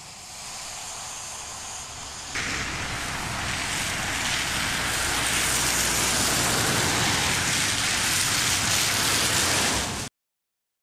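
Car traffic on a wet, slushy road: a steady hiss of tyres on slush and wet tarmac that jumps louder about two seconds in and swells as a car passes close, then cuts off suddenly at the end.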